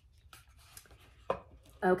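Light handling noises: soft taps and rustles as a wooden picture frame is set down and slid on a desk, with one sharper knock about a second and a half in. A woman's voice starts near the end.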